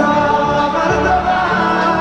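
Live concert music over a loud stage sound system: a singer holds and bends long notes over a band with steady chords.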